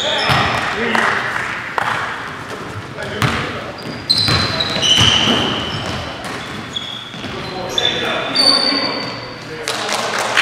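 Basketball game in a gym: the ball bouncing on the hardwood floor, sneakers squeaking in short high squeals, and players' voices calling out, all echoing in the large hall.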